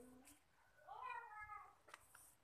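A cat meowing once, about a second in: a single call that rises and then falls in pitch.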